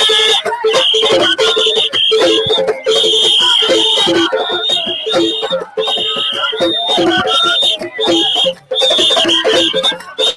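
A whistle blown in repeated shrill blasts, each roughly a second long, over music.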